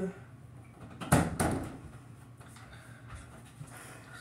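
Two quick, sharp knocks about a second in, a third of a second apart, then faint room noise.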